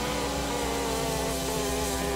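Live rock band playing: electric guitar holds long, wavering notes over a steady low drone, with no singing.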